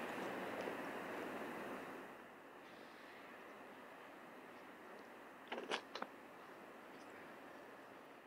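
Steady outdoor noise that drops to a faint hiss about two seconds in. Just past halfway there are a few quick clacks of stones knocking together: footsteps on a pebble beach.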